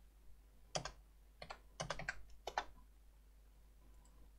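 Faint keystrokes on a computer keyboard, several quick taps in short bursts between about one and three seconds in: numbers being typed into a value field.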